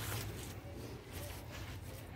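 Bare feet scraping and squishing dry cement powder across a wet concrete slab, in soft strokes at the start and again near the end, over a steady low hum.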